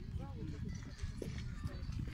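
Indistinct talking voices, no words clear, over a steady low rumble.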